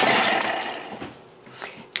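Thermomix TM6 blade chopping an onion at speed 5: a loud whirring that sets in suddenly and fades out over about a second and a half.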